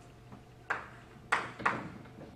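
Chalk tapping and scraping on a blackboard as characters are written: three sharp taps in the second half, each ringing briefly.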